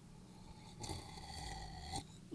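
A person sipping and swallowing water from a glass, faint and starting about a second in.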